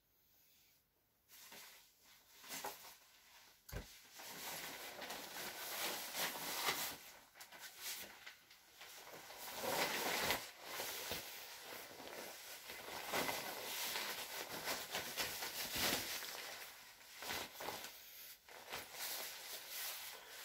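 Jacket fabric rustling and swishing as a jacket is pulled on and settled over the shoulders, in irregular bursts that begin about a second in.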